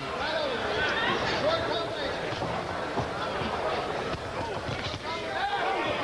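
Boxing crowd shouting and cheering, many voices overlapping at once.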